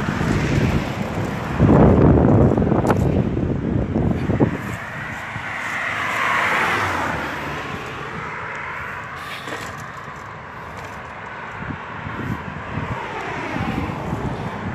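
Wind buffeting a phone microphone, loudest in a rumbling gust a couple of seconds in, followed by a smooth rush of noise, like a passing vehicle, that swells and fades.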